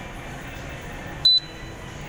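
A single short, high-pitched electronic beep about a second in, over steady low background noise.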